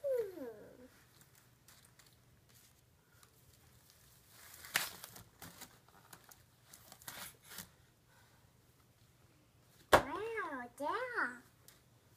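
A toddler's wordless, high-pitched vocal sounds, with the rustle and crinkle of packaging and toys being handled. About ten seconds in, a sharp click is followed by a warbling sing-song vocalization that rises and falls in pitch.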